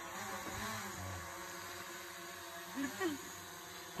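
Quadcopter drone flying close by: a steady propeller buzz whose pitch wavers at first, then holds steady.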